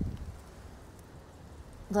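Quiet outdoor background with low rustling and soft thumps in the first half-second that then fade, and a woman's voice starting just at the end.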